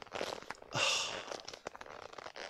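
Soft quilted leather Chanel clutch being squeezed and rubbed in the hand against the chest: a crinkling, rustling leather sound with small creaks and a louder rustle about a second in.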